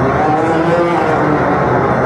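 Live experimental electronic music from a laptop ensemble: a dense, noisy texture with short, slightly gliding mid-pitched tones over it.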